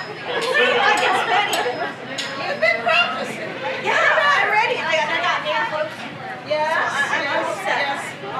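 Only speech: voices talking.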